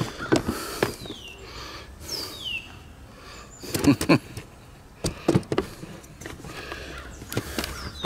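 Handheld camera being moved and set in place, with scattered knocks, bumps and rustles. A bird calls twice in the background, each call a short falling whistle.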